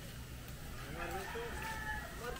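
A rooster crowing: one long call that starts about a second in, rises and then holds a steady pitch.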